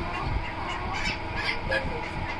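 Farm poultry calling in the background, a few short calls with no one speaking.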